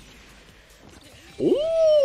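A man's drawn-out "ooh" of admiration, rising in pitch and then held, starting about a second and a half in after faint background sound.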